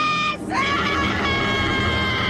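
An anime character's high-pitched, drawn-out scream of the name "Ace!": one long held shout breaks off about half a second in, and a second one starts with a quick rise in pitch and is held steady.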